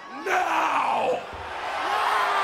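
A man's wordless shouting into a handheld microphone over a cheering crowd: one yell about a quarter second in that falls in pitch, then a second, held yell near the end.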